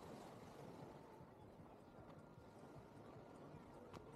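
Near silence: faint outdoor room tone with a few weak ticks.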